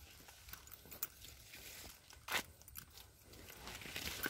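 Faint crunching and crackling of footsteps on dry, cracked mud, with one louder crunch a little over two seconds in.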